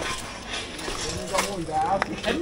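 Voices of people talking on a busy street, with a sharp click about one and a half seconds in.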